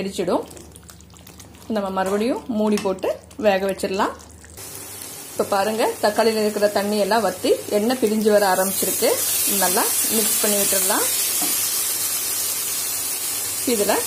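Thick tomato thokku sizzling in sesame oil in a kadai as it cooks down toward the point where the oil separates: a steady hiss that starts about a third of the way in and grows louder past the middle. A woman speaking Tamil talks over much of it.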